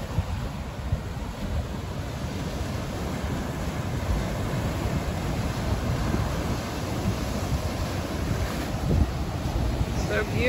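Ocean surf breaking and washing over rocks on a beach, a steady wash of water, with wind buffeting the microphone.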